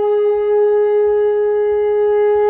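One long, steady note held on a wind instrument, with clear overtones and no change in pitch.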